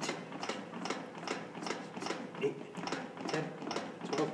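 CPR training manikin's chest clicking rhythmically under steady two-handed chest compressions, about four clicks a second.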